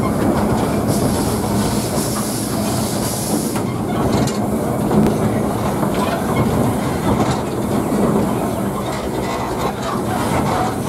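Cab sound of the 2 ft gauge 0-4-2 tank steam locomotive 'Nelson' running slowly, a steady rumble and rattle of the footplate and wheels on the track. A hiss of steam joins in from about a second in until about three and a half seconds.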